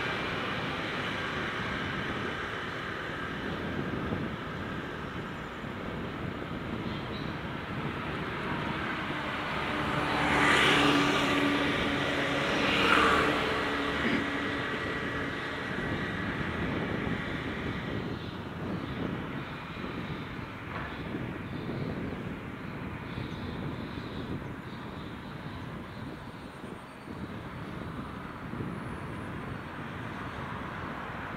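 Steady road and wind noise from a moving bicycle, with a motor vehicle passing close about ten seconds in and fading after about fourteen seconds.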